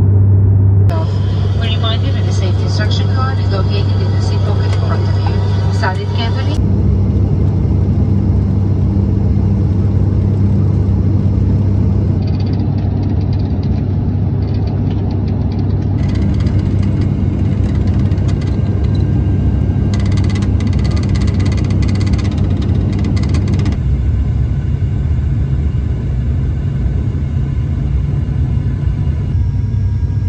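ATR 72-600 turboprop, its Pratt & Whitney PW127 engines and six-blade propellers droning steadily at a low pitch, heard inside the cabin. The sound shifts abruptly several times where clips are joined, and indistinct voices come through in the first few seconds.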